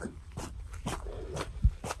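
Footsteps at a fast walk on a dirt trail, short scuffs about two a second, with a low thump near the end.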